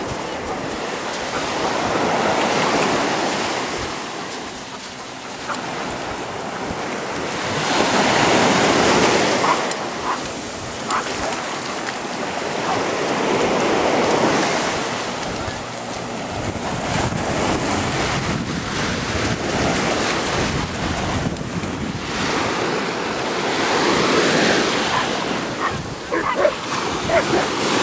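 Ocean surf breaking on a beach: a steady wash of noise that swells and falls about every five to six seconds as the waves come in, with wind rushing over the microphone.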